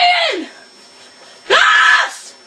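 A boy screaming German words: a yelled cry rises and falls, dying away about half a second in. A second loud scream comes near the end.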